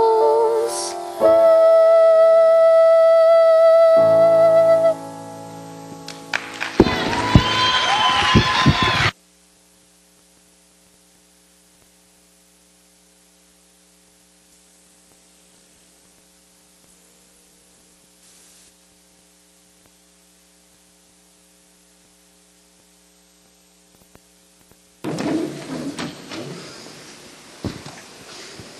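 A girl's voice holds a final sung note over accompaniment, and the song ends. A burst of audience applause and cheering follows, cut off suddenly about nine seconds in, leaving a long stretch of faint steady hum. Near the end come rustling and knocking noises on the stage.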